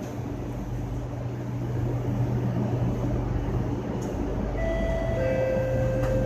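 SMRT C751B metro train running, a steady rumble with a low hum. Near the end an onboard chime sounds, two steady notes one after the other, ahead of the next-station announcement.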